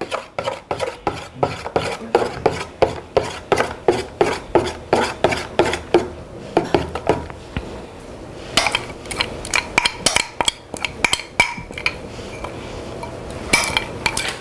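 A utensil stirring pudding mix in a stainless steel bowl, clicking against the metal about three to four times a second, then scraping and clinking more densely later on.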